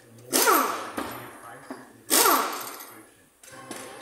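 Tyre changing machine at work on a car wheel: two loud, sudden hissing bursts about two seconds apart, each with a falling whine that fades over about a second, and a weaker one near the end.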